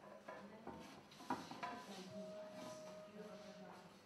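Faint clinks and knocks of a glass sheet on its mould being set onto a kiln shelf, a few light strikes in the first two seconds.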